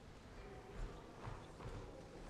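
Faint footsteps of a man walking across the hall floor: a few dull steps about half a second apart.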